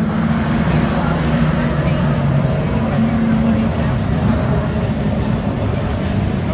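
Late model stock car V8 engines running on the track: a loud, steady, deep rumble whose pitch rises and falls slightly.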